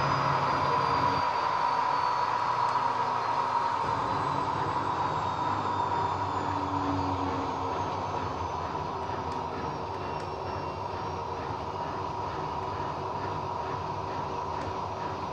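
Miele Softtronic W5820 front-loading washing machine spinning its drum at speed: a steady motor whine and rushing hum, its higher whine slowly falling in pitch and the sound gradually easing off as the spin slows.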